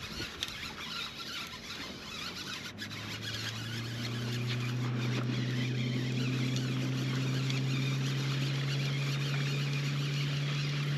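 Electric trolling motor humming. It starts about three seconds in, swells over the next second and then holds steady, rising slightly in pitch.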